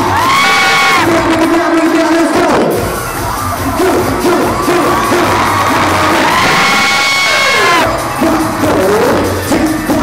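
Live concert music through the PA with a cheering crowd, and a fan close to the recorder letting out two long, high-pitched screams: one just after the start and another from about six to eight seconds in.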